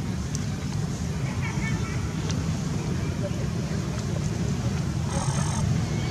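Steady low outdoor rumble, with a few faint high wavering chirps about one and a half seconds in and a brief high hiss near the end.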